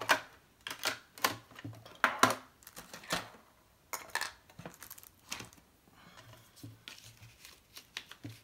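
Craft supplies being handled on a tabletop: a run of irregular small clicks and knocks, the first as a small ink pad cube is set down by its tin, mixed with paper and plastic rustling that grows softer after about six seconds.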